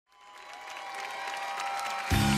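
Studio audience applauding, fading up from silence, with a faint steady held tone underneath.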